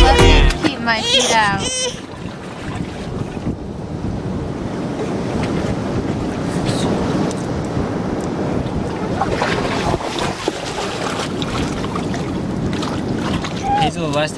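A baby cries briefly in the first two seconds, then a steady wash of surf and wind noise on the microphone fills the rest.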